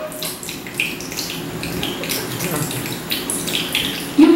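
Water sloshing and splashing in irregular, quick bursts.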